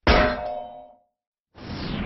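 A single metallic clang sound effect with a ringing tail that dies away within about a second, the closing hit of an animated logo intro. After a short silence a new sound fades in near the end with a falling, whoosh-like sweep.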